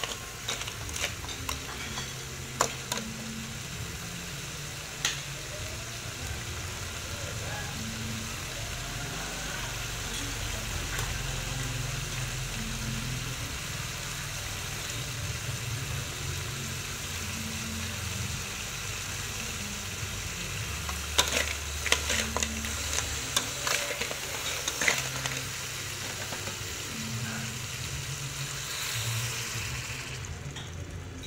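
Crabs stir-frying in a steel wok: a steady sizzle, with a metal spatula and ladle scraping and clinking against the wok, the clinks coming in a flurry about three-quarters of the way through.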